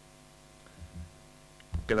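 Steady low electrical mains hum with several evenly spaced tones, and a soft low bump a little under a second in. A man's voice begins speaking near the end.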